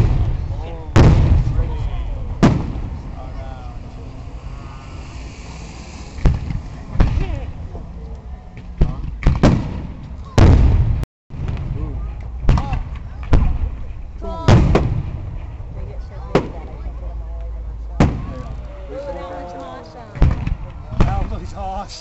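Aerial fireworks shells bursting in an uneven string of sharp bangs, sometimes one or two a second, each trailing off in a low rumble.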